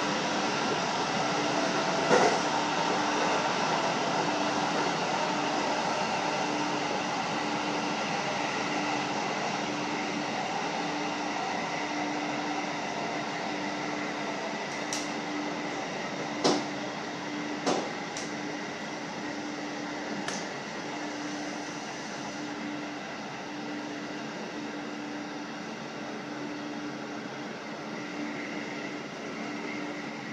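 Interior running noise of a JR Hokkaido 711 series electric multiple unit, heard from just behind the cab, easing off gradually as the train slows toward a station. A low tone pulses on and off throughout, and a few sharp knocks come from the wheels over rail joints or points, most of them clustered in the middle.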